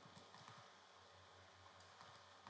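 Near silence with faint, irregular light clicks and taps over a low hum.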